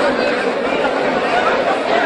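Several people talking at once: a steady hubbub of overlapping voices, with no single clear speaker.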